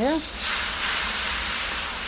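Water poured into a hot wok of curry paste (fried onion, tomato and spices), hissing and sizzling as it boils off into steam. The hiss starts suddenly about half a second in and holds steady, fading slightly.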